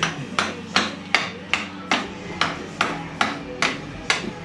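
Hammer driving a screwdriver into a stuck engine oil filter to twist it loose without a filter wrench. About ten sharp blows land in a steady rhythm of roughly two and a half a second.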